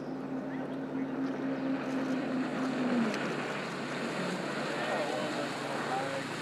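Jet ski running across open water with its hull spray hissing; a steady engine tone drops away about three seconds in.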